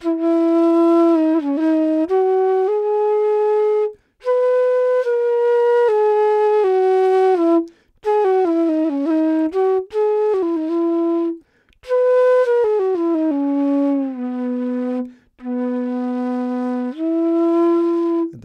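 Long bamboo bansuri made by Alon Treitel, played solo and dry, with no reverb or processing. It plays a slow melody of held notes joined by sliding pitch bends, in phrases broken by short breath pauses every three to four seconds.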